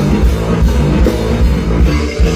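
Live band playing loudly through a PA: electric guitars, keyboard, bass and a drum kit, with a heavy bass line.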